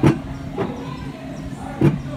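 Mountain-coaster bobsled car rolling along its steel tube rails: a steady low hum with sharp knocks at the start, about half a second in and again near the end.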